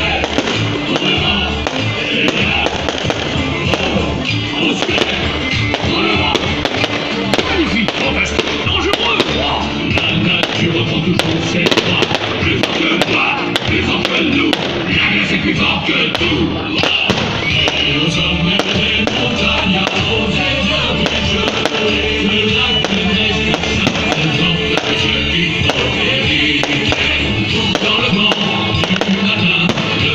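Fireworks display: shells bursting with repeated sharp pops and crackles, over loud music.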